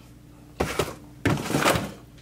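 A cardboard protein-shake carton being handled on a refrigerator shelf: a dull thunk about half a second in, then a longer scraping rustle as it is pulled out of its cardboard box.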